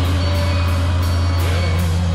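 Live rock band music: a loud sustained low bass drone with held guitar tones above it, with no drum beat, as one song gives way to the next.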